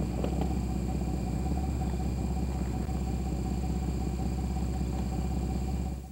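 A steady low mechanical rumble with a faint high hum over it, cutting off abruptly at the end as the recording stops.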